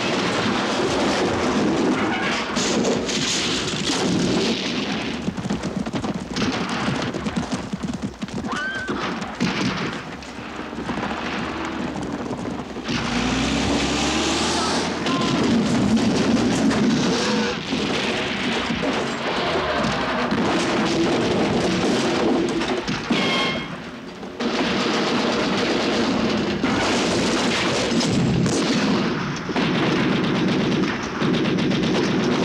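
Loud, dense battle din of a film soundtrack: military vehicles crashing and overturning amid booms and gunfire, as one continuous mix that drops away briefly twice.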